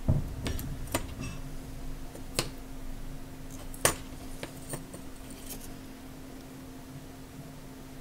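Scattered light clicks and taps as a soldering iron tip and a small circuit board are nudged into line on header pins, the sharpest about four seconds in, tailing off after about five seconds. A faint steady hum runs underneath.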